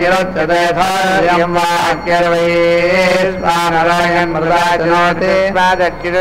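Male Vedic chanting: Sanskrit mantras recited in long, held tones that move in small steps of pitch, with a steady low hum underneath.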